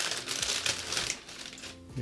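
Tissue paper crinkling and rustling as it is pulled back from a boot in a shoebox. The rustle is densest in the first second or so and dies down toward the end.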